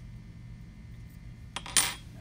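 A small metal tool or part set down on a hard workbench, about a second and a half in: a faint click, then one short, sharp metallic clink.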